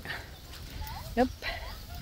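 Breeze rumbling on the phone's microphone, with a quick spoken "yep" about a second in.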